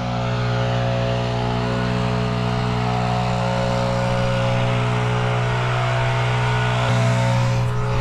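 Riding lawn mower engine running steadily at speed, a constant mechanical drone with a slight shift near the end.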